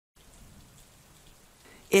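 Faint, steady recording hiss (room tone), which starts a moment in after dead silence, with no distinct event in it; a voice starts speaking right at the end.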